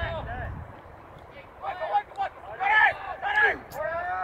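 People shouting from the sideline: several short, high-pitched yells in quick succession about halfway through, with a single sharp click near the end.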